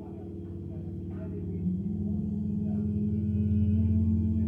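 Sustained low drone of several steady, held tones that swells gradually louder, ringing like a gong or singing bowl.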